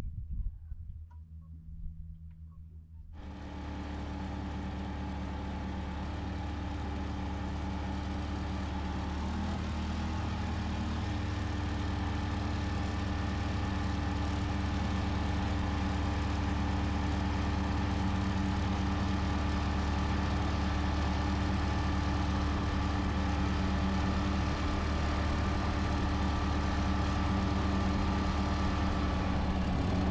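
Boat motor running steadily with the boat under way, a constant engine drone with a spread of steady tones, starting abruptly about three seconds in after a quiet opening and growing slightly louder.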